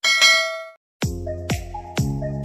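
A ding sound effect from a subscribe-button animation, ringing out and fading over about three quarters of a second. About a second in, intro music starts, with a beat of about two thumps a second.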